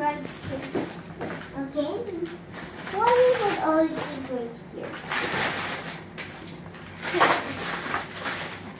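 A young girl's voice, vocalizing briefly twice without clear words, followed by the rustling of paper and plastic gift wrapping, twice, the second louder, in the later part.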